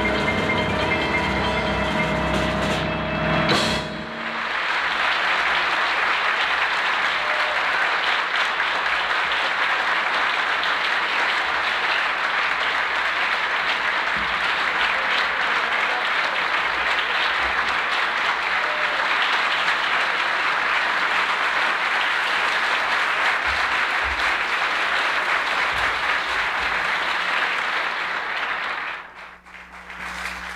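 A jazz quartet of piano, clarinet, bass and drums holds its final chord and stops with a last sharp hit about three and a half seconds in. Sustained audience applause follows and dies away just before the end.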